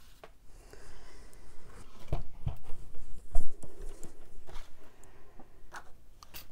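Cards and cardstock sliding and rustling on a wooden tabletop, then a few knocks and thumps as a plastic die-cutting and embossing machine is moved into place and set down, the loudest thump about three and a half seconds in.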